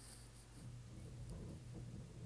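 Faint stylus tapping and scratching on a tablet screen as a point is drawn on a graph, over a steady low hum.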